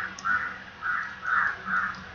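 A bird calling over and over in the background, five short calls about every half second.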